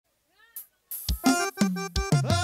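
Forró band music starting about a second in, with electronic keyboard notes and sharp drum hits. Just before it comes a faint, short cry that rises and falls in pitch.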